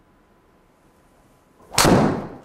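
A TaylorMade SIM MAX driver striking a golf ball off a tee, heard as one sharp, loud crack near the end, ringing briefly in the room.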